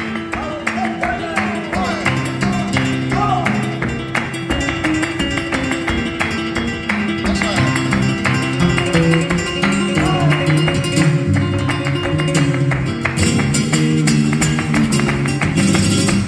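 Flamenco guitar playing a tangos accompaniment, with palmas (rhythmic hand-clapping) from three people keeping the compás in a steady, even beat.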